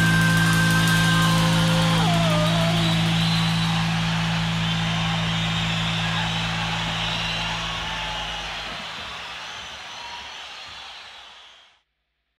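Ibanez S570B electric guitar through a Line 6 POD HD300 processor, letting a final chord ring. About two seconds in, a note slides down in pitch, and the sound then fades out over several seconds, cutting to silence near the end.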